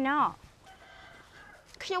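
A woman's voice ends a phrase with a falling pitch, then a pause that holds only a faint, drawn-out pitched sound before speech starts again near the end.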